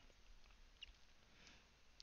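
Near silence: faint room tone, with one small tick a little before the middle.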